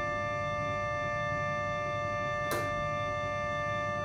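Schiedmayer pedal harmonium (reed organ) holding a soft sustained chord of steady reed tones; its lower notes are released at the start and the upper notes ring on. A single short click comes about two and a half seconds in.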